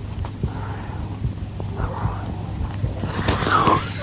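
Faint, muffled voices and scattered light knocks and clicks over a steady low hum. Near the end a louder, noisier sound comes in, with a brief rising and falling tone.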